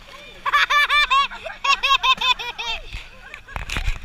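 High-pitched laughter in quick repeated bursts, two bouts of about a second each, followed near the end by a brief low rumble.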